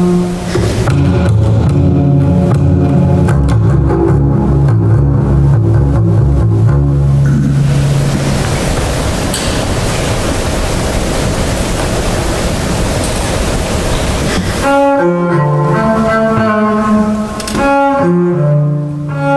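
Solo double bass played with the bow: low notes and double stops for about seven seconds, then about seven seconds of rushing bow noise with no clear pitch, then higher bowed notes return near the end.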